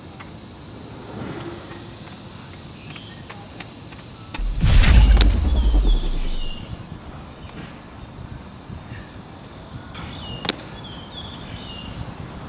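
Teleport sound effect: a sudden deep boom with a hissing burst, starting about four and a half seconds in and lasting about two seconds. A single sharp click follows near the end.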